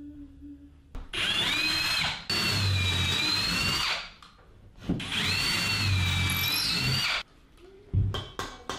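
Cordless drill boring into the wall, run twice for a few seconds each. The motor whine climbs as it spins up and wavers in pitch as the bit bites.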